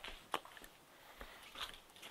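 Faint clicks and light rustling of small objects being handled, with one sharper click about a third of a second in.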